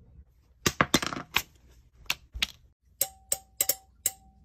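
Sharp tapping clicks, several in quick succession about a second in and two more a second later. Toward the end come taps that each leave a short metallic ring, fitting a hand tapping the metal YouTube award plaque.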